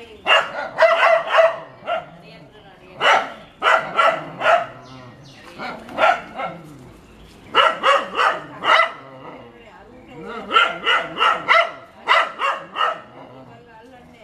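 Dog barking in quick bursts of several barks with short pauses between, alarm barking at a cobra with its hood raised.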